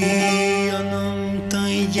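Male vocal ensemble singing Corsican polyphony: lower voices hold a steady drone while a higher voice moves above it in an ornamented, wavering line.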